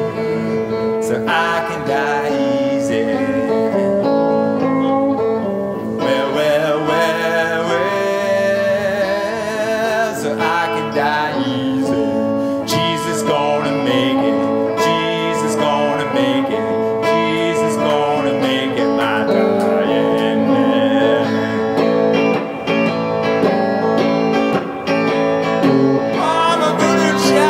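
Live solo blues instrumental: electric guitar played together with a harmonica on a neck rack, the harmonica's wavering held notes running over the guitar.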